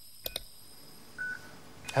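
Two quick clicks close together, then a single short electronic beep about a second later, like a phone keypad tone, from the sound design of an advert's closing 'register now' screen.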